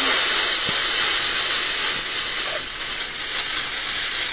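Steady fizzing hiss of cola foaming up from a Mentos-and-Coke reaction, easing slightly toward the end, with the foam forced out around a mouth sealed over the bottle's neck.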